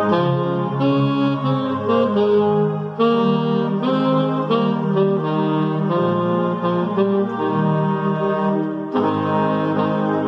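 Alto saxophone playing a slow hymn tune in long held notes over a keyboard accompaniment, with short breaths between phrases about three and nine seconds in.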